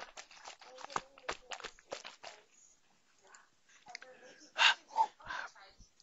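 Close-miked mouth and throat sounds of a man drinking water: a run of small clicks and swallows, a short lull, then a few loud, rough vocal noises a little past the middle, which he puts down to maybe a muscle spasm.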